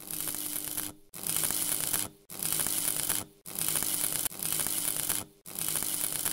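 Loud static-like hissing over a steady low hum, coming in blocks about a second long with short breaks between them, starting abruptly.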